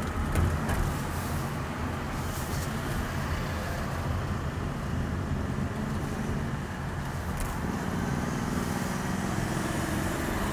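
Car being driven through city traffic, heard through a dashcam in the cabin: a steady low drone of engine and road noise.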